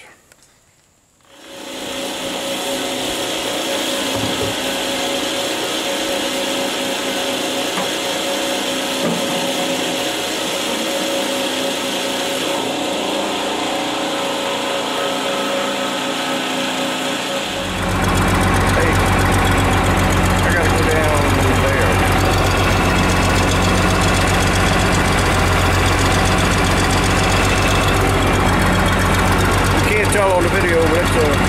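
A fuel transfer pump runs steadily, with a steady whine, while fuel is pumped into a tractor's tank. From about 17 seconds in, a louder, deeper diesel engine idles steadily.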